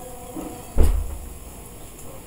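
A single dull, bass-heavy thump about a second in that dies away quickly, over a steady faint background hum.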